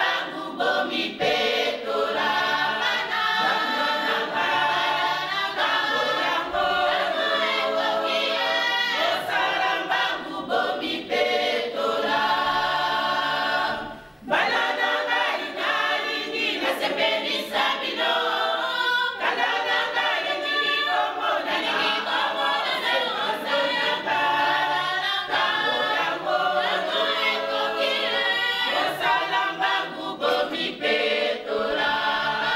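Church congregation singing together unaccompanied, a cappella, with a short break between phrases about halfway through.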